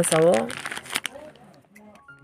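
Plastic poly mailer crinkling as it is handled and cut open with scissors, with a few sharp snips and crackles that thin out toward the end.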